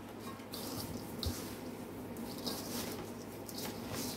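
A gloved hand mixing raw pork pieces coated in salt and seasonings in a stainless steel bowl, making a few soft, wet squishes and rustles.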